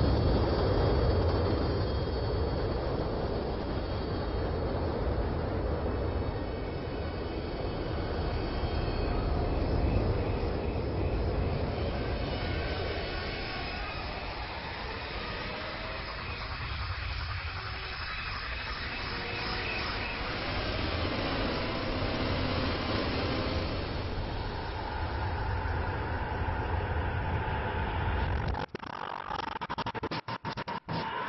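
A steady rumbling noise with a deep low hum, loudest at the start, breaking into rapid stuttering cuts near the end.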